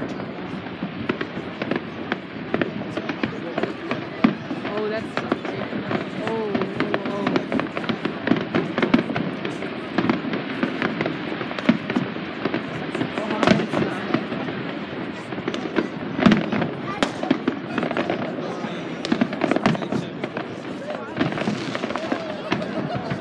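Aerial fireworks shells bursting: a continuous run of bangs and crackles, with a few sharper, louder bangs in the second half.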